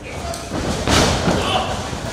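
Heavy thuds and slams of a wrestler's body hitting the wrestling ring and its corner, the loudest about a second in, with voices shouting over them.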